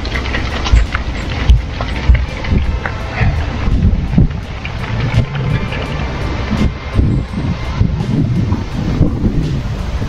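Wind buffeting the microphone in gusts, with faint background music.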